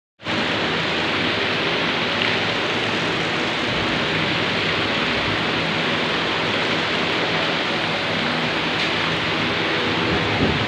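Heavy rain falling, a loud steady hiss.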